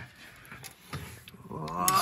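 Low handling noise with a few faint clicks, then a man's voice starting about one and a half seconds in.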